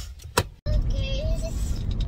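Car cabin noise while driving: a steady low road and engine rumble that starts abruptly about half a second in, just after a short click.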